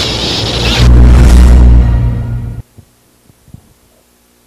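Lightsaber sound effects: a loud, deep electric hum swells about a second in and cuts off abruptly after about two and a half seconds, leaving a quiet background with a few faint clicks.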